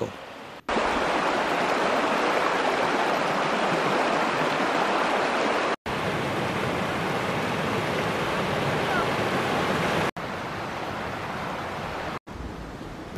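A fast, shallow mountain river rushing over rocks in a steady roar. It comes in separate takes that cut off suddenly about six and ten seconds in, and the last take is quieter.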